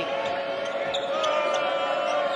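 Sound of a basketball game in a large arena: a ball dribbling on the hardwood court against steady crowd noise.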